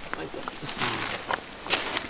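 Plastic wrapping rustling in a few brief bursts as a package wrapped in black plastic is picked up and handled.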